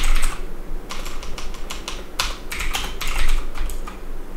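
Typing on a computer keyboard: a run of quick, irregular key clicks with short pauses between bursts.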